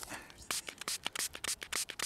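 A hand-held spray bottle squirting water onto a coin in someone's palm to rinse off the dirt: a quick run of short hissing squirts, about seven a second, starting about half a second in.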